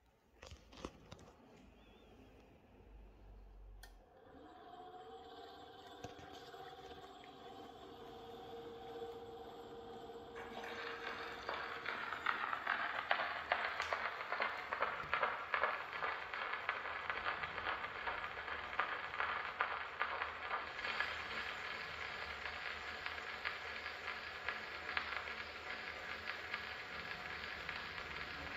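Edison Triumph phonograph starting to play a 4-minute cylinder record: a few clicks, a faint whirr as the mechanism comes up to speed, then the hiss and crackle of the cylinder's surface noise swelling from about a third of the way in as the stylus runs through the silent lead-in groove.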